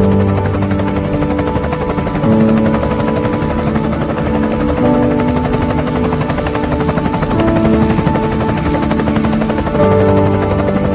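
Helicopter rotor running, heard together with a background music track of held notes.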